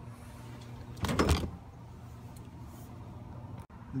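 Handling noise as the recording phone is moved: one short, loud rubbing scrape about a second in, over a steady low hum.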